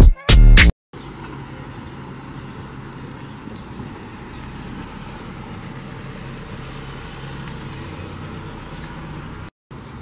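The last hit of loud electronic intro music cuts off within the first second. Steady outdoor background noise with a low hum follows for the rest of the clip.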